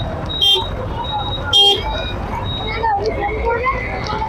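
Busy street crowd and traffic: scattered voices chatting over the low hum of passing motorbikes and auto-rickshaws, with two short, sharp, high-pitched bursts about half a second and a second and a half in.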